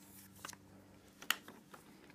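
A plastic coin tube of silver bullion coins being handled as its cap is pulled off: a soft rustle and a few light plastic clicks, the sharpest about a second and a half in.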